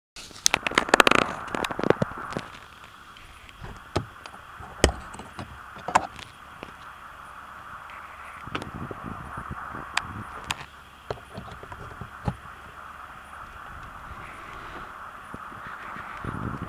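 Handling noise in a car's cargo area: a quick run of clicks and knocks in the first two seconds, then scattered single clicks, as the AC power outlet's cover is handled and a plug is pushed in. A steady background hum runs under it.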